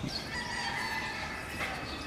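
A bird calling once in one drawn-out call of about a second, over steady outdoor background noise.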